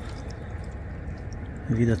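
River water washing and lapping at the bank, a steady even wash with no distinct splashes.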